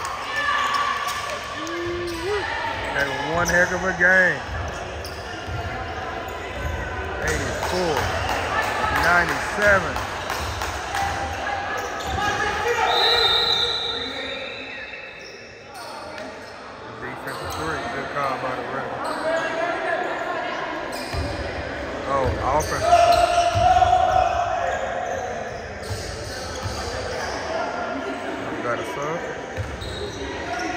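Basketball bouncing on a hardwood gym floor during live play, with players calling out over it, all echoing in a large gym.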